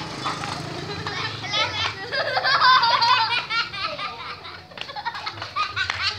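Children's high-pitched voices calling out and laughing, loudest around the middle, with scattered sharp clicks underneath.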